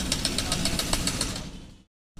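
An engine running, with a fast, even ticking knock over a low rumble, fading out near the end.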